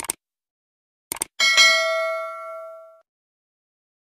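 Subscribe-button sound effect: a quick double mouse click, another double click about a second later, then a bright notification-bell ding that rings for about a second and a half and fades away.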